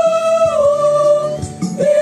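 Church choir singing a hymn, holding one long note for over a second, then starting the next phrase near the end.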